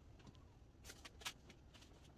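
Near silence with a few faint, brief rustles and taps of hands handling a hoodie on a heat press platen.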